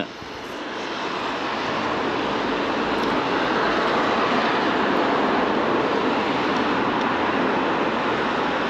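Small quadcopter drone in flight: a steady whirring hum from its propellers that swells over the first couple of seconds and then holds.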